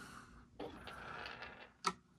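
A screwdriver turning a mounting screw back into a speaker woofer's frame: about a second of scraping turns, then one sharp click near the end.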